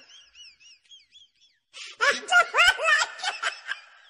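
A person laughing for about two seconds, starting about halfway through, the pitch rising in each short peal. Faint high warbling tones come before it.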